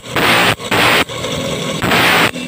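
A hand file rasping across the teeth of a handsaw being sharpened, in quick, even strokes about two a second.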